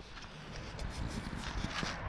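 Faint outdoor background noise with a low rumble and light scattered clicks and rustles from a handheld camera being turned around.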